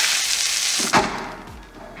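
Comedy vomiting sound effect: a loud hissing gush of a person throwing up, which fades away over the second second.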